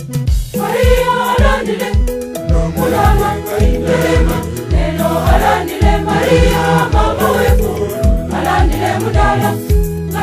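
Church choir singing a gospel song over backing music with a steady low drum beat; the voices come in about a second in.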